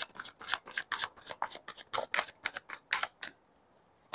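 Tarot cards being shuffled by hand: a quick run of crisp card snaps and flicks that stops a little over three seconds in.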